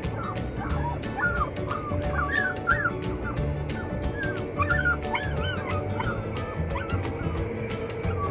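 Dogs in travel crates whining and yipping in many short rising-and-falling calls, over background music with a steady beat.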